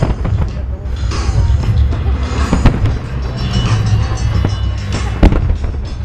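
Aerial firework shells bursting in quick succession over a continuous low rumble of booms, with sharp bangs and crackle; the loudest bang comes about five seconds in.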